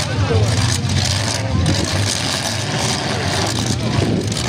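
Several demolition derby pickup trucks' engines running and revving together, with a couple of brief knocks from the trucks hitting each other.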